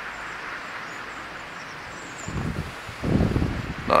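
Outdoor breeze: a steady rushing hiss, with gusts buffeting the microphone in two low rumbles about two and three seconds in.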